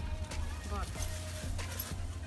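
A woman's voice saying a short word over a steady low rumble, with a few faint light clicks.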